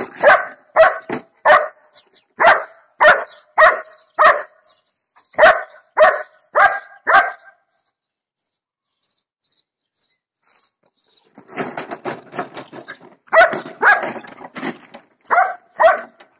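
German shepherd barking at a lawn mower: a run of about a dozen sharp barks, roughly two a second, for the first seven seconds. After a pause and a rougher noisy stretch, a few more barks come near the end.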